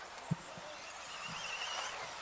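Faint outdoor background noise at an RC buggy track, a steady hiss with a brief low thump about a third of a second in and a faint wavering high whine in the second half.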